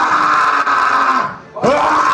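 Two long, drawn-out yells into a microphone through the club PA, the first breaking off after about a second and a half and the second starting just after.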